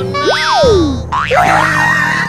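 Cartoon boing sound effect, a quick springy tone that slides up and back down, over background music. From about a second in, the music changes to a busier passage with wavering high tones.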